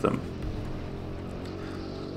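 Go-kart running steadily, heard faintly from its onboard camera.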